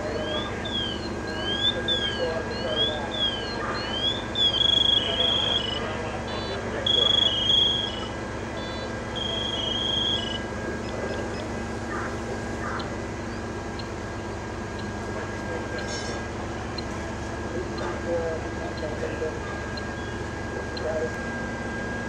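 An electronic emergency-vehicle siren sweeping rapidly up and down in a yelp. About four and a half seconds in it changes to three short, loud blasts of a steady high tone that steps in pitch. Underneath runs the steady drone of the fire engine's motor with a faint constant high whine.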